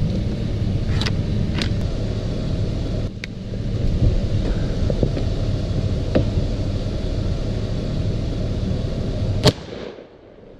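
Pickup truck engine idling steadily, with a few sharp clicks early on from the door and gun handling, then a single loud shotgun shot near the end, fired at a ruffed grouse.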